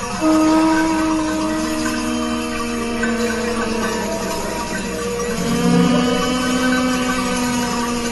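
Jazz horns, trumpet and saxophone, holding long sustained notes together in harmony. A fresh chord comes in just after the start and another about five seconds in.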